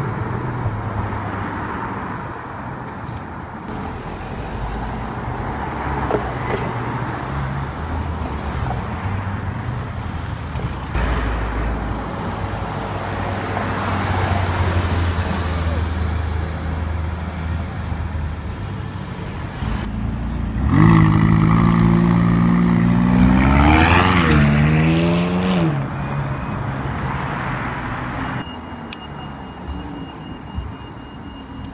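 Supercar engines running at low speed in street traffic. About 21 seconds in, one engine note gets much louder, with a quick rev that rises and falls around 24 seconds, then it fades back into the traffic sound.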